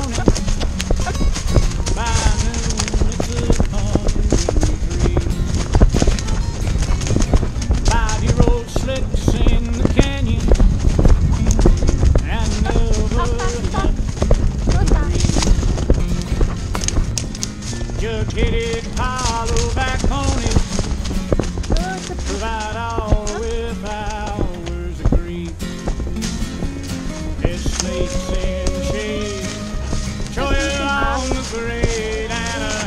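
Hooves of a Noriker horse clip-clopping on a dirt and leaf-litter forest path, under background music with singing.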